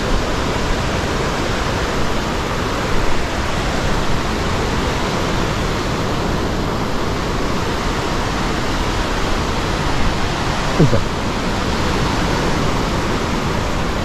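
Steady rushing noise of waves breaking along the beach, mixed with wind on the microphone.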